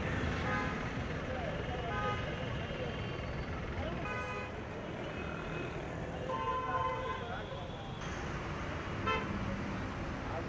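Busy street traffic with vehicle horns honking briefly several times over a steady bed of engine noise and voices.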